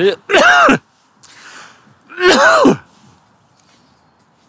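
A man coughing: two loud coughs about two seconds apart, with a breath drawn in between.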